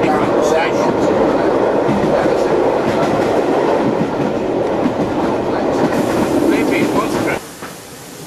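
A train running on the rails, its wheels clicking rhythmically over the rail joints. The sound drops away abruptly about seven seconds in.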